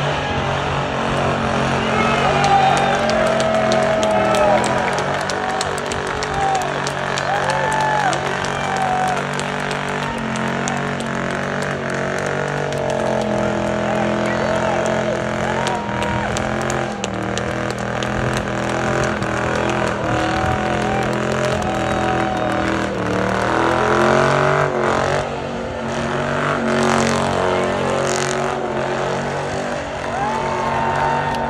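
Dodge Charger doing a burnout: the engine is held high in the revs with the throttle worked up and down, and the rear tires spin and squeal on the pavement.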